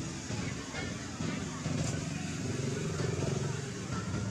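Background voices of people talking, unclear and not close, over a motor vehicle engine running steadily.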